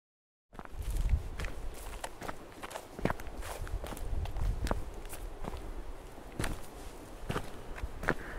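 Footsteps walking on an asphalt road, an irregular series of short scuffs and taps over a low rumble, starting about half a second in.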